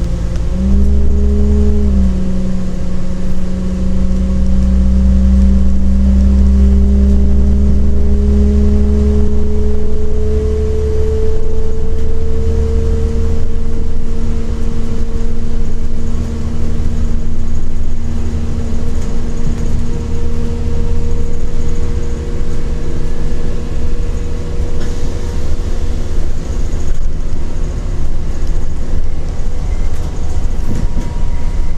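Inside a carriage of a CAF Class 4000 diesel multiple unit, its underfloor diesel engine drones under power as the train pulls away. The engine note climbs slowly for the first dozen seconds or so, then holds steady.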